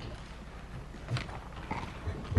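A pause between speech: low, steady hum of a meeting-room microphone system, with a faint short rustle about a second in.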